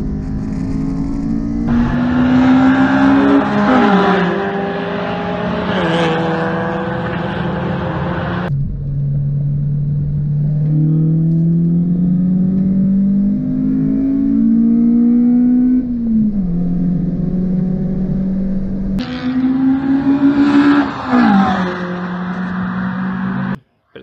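Toyota Corolla GTi's 4A-GE twin-cam four-cylinder engine heard from inside the cabin while lapping a race track, revving hard with the pitch climbing through each gear and dropping sharply at the upshifts. The sound changes abruptly a few times and cuts off suddenly just before the end.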